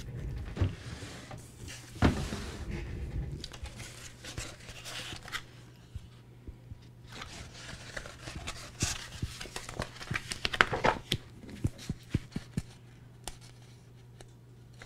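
Roll of glossy blue adhesive craft vinyl being handled and unrolled by hand, crinkling and rustling with irregular clicks and taps as the sheet is flattened on a wooden table.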